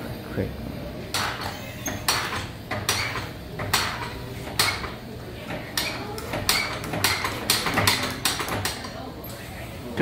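Hand pump on a deep-sea pressure-tube exhibit being worked, its handle clacking with each stroke: a run of sharp clacks, about one a second at first and quickening to two or three a second in the last few seconds.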